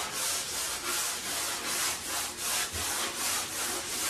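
3M 120-grit sanding sponge rubbed by hand over dry primer on a drywall wall, in quick back-and-forth strokes, about three a second. This is a light sanding between coats to knock down any specks or bubbles in the primer.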